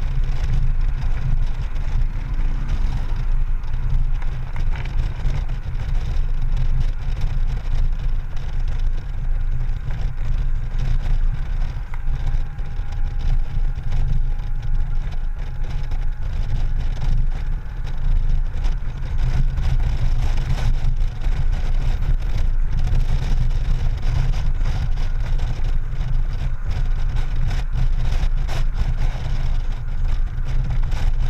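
Honda Gold Wing GL1800 motorcycle cruising steadily on the highway, heard from a camera mounted on the bike: a steady low rumble of wind buffeting the microphone over the engine's drone.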